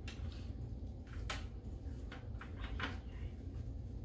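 A few short clicks and scrapes of metal tongs and a stirring spoon as browned beef chunks are lifted off a tray and dropped into a pot, over a low steady hum.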